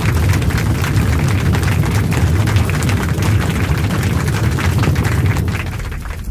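Logo-reveal sound effect: a low rumble with dense crackling, fading over the last second.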